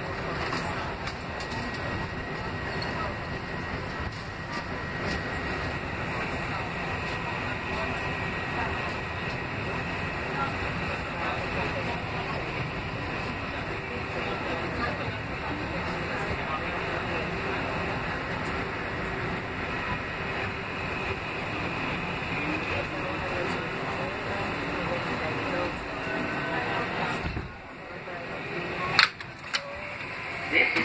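Kawasaki R188 subway car running on the 7 line with a steady rumble of wheels on rail and a thin, steady motor whine. It slows into a station and the noise drops off sharply near the end as the train stops, followed by a loud clunk as the doors open.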